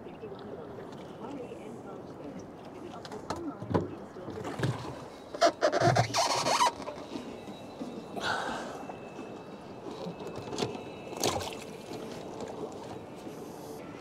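Irregular knocks, bumps and rustling from gear being handled aboard a small boat, with a louder rough burst of noise about six seconds in.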